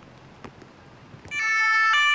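Faint hush of a crowd standing in silence, then about two-thirds of the way in a police vehicle's two-tone siren cuts in loudly, its pitch stepping once near the end.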